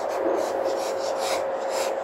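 Graphite pencil scratching across drawing paper in a few short strokes, over a steady background hum.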